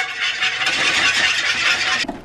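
Food sizzling in a frying pan on a hot electric coil stove as it is stirred with a utensil: a steady hiss that starts abruptly.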